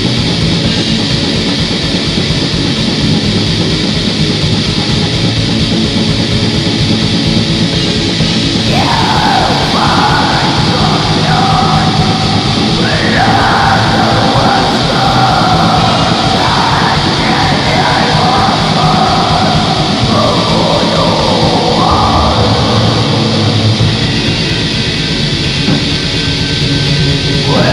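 Black metal played at full tilt: fast drums under a dense wall of distorted guitars. Harsh, shrieked vocals come in about nine seconds in and carry on until shortly before the end.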